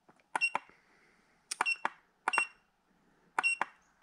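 Kingbolen BM580 battery analyzer's keypad beeping as its buttons are pressed to back out of its menus: several short high beeps, some in quick pairs, each starting with a click.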